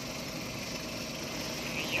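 Suzuki Carry's 660cc K6A three-cylinder engine idling steadily, heard from inside the cab.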